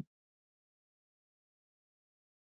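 Near silence: the audio is gated to nothing.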